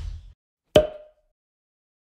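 Animated end-card sound effects: a whoosh dying away at the start, then a single sharp pluck-like hit with a short ringing tone just under a second in, followed by silence.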